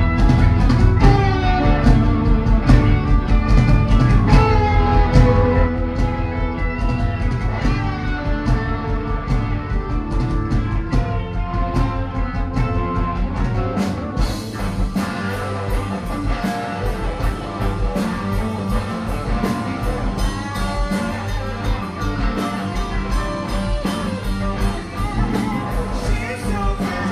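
Progressive rock band playing live, an instrumental passage with the electric guitar prominent over bass and drums. About halfway through, the arrangement changes and the drums settle into a steady beat of evenly spaced high strikes.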